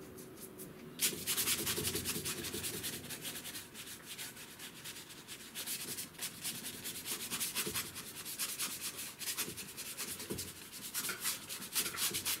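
Paintbrush scrubbing acrylic paint onto sketchbook paper in quick, repeated back-and-forth strokes, starting about a second in.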